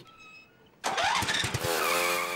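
A quad bike engine starting suddenly about a second in, then running steadily as the bike pulls away.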